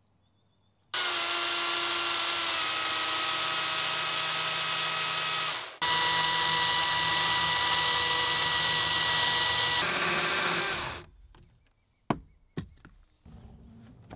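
Makita cordless electric chainsaw with an Oregon bar and chain cutting through a log: a steady motor whine and chain noise for about five seconds, a brief break, then a second cut of about five seconds that stops about eleven seconds in. A few sharp knocks follow near the end.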